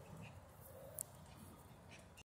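Near silence: faint low outdoor rumble, with one brief sharp click about a second in.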